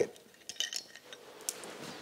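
A few light metallic clinks as a steel mounting bracket is lifted off the gearbox of a PTO-driven hydraulic pump.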